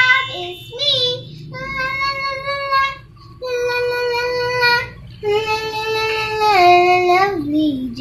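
A young girl singing solo in long held notes, in about four phrases with short breaths between them; the last phrase slides down in pitch.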